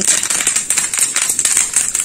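Curry leaves dropped into hot oil for a tadka, spluttering and crackling loudly in a dense, continuous crackle of fine pops.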